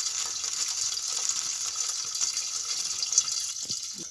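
Popcorn kernels sizzling in hot ghee inside a covered metal pan on a gas flame: a steady crackling hiss that eases a little near the end.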